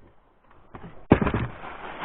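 A sharp knock about a second in, followed by steady rustling handling noise.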